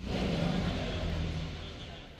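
Outdoor crowd ambience: indistinct chatter of distant men's voices over a steady low rumble, such as traffic or idling vehicles.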